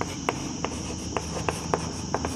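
Chalk tapping and scratching on a blackboard while a word is written: a string of sharp, irregularly spaced ticks, about eight in two seconds. A steady high-pitched whine runs underneath.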